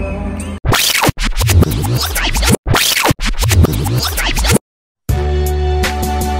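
A rewind sound effect: live concert audio turns into about four seconds of chopped, stuttering, scratch-like sped-up audio with short gaps. After a brief dropout, background music with a steady beat comes in.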